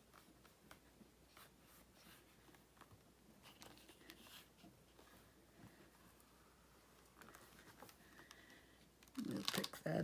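Fingers pressing and rubbing clear stamps onto cardstock in a stamping platform: faint scattered taps and light rubbing, with a voice starting near the end.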